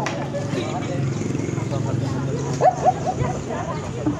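Background chatter of onlookers while a message is whispered ear to ear, with two short, sharp rising yelps in quick succession a little past the middle.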